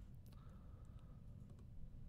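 Faint, scattered clicks of a computer mouse over a low background hum, as a circle is picked for dimensioning in CAD software.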